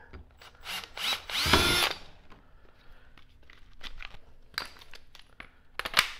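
A cordless drill spins up briefly about a second and a half in, its motor pitch rising as it bores an eighth-inch pilot hole into a plastic kayak mount. Light clicks and handling taps follow, with a sharp click near the end.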